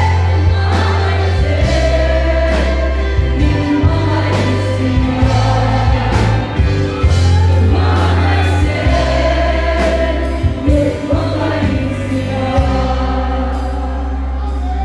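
Live gospel band playing through a PA: a woman singing lead into a microphone with a backing singer, over a drum kit keeping a steady beat, electric guitar and a heavy bass line.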